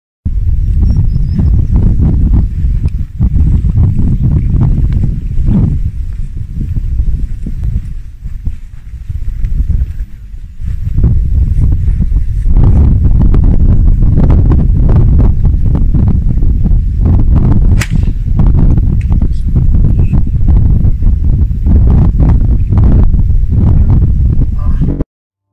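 Wind buffeting an outdoor camera microphone as a loud, uneven low rumble. A single sharp crack of a golf club striking the ball off the tee comes about two-thirds of the way through.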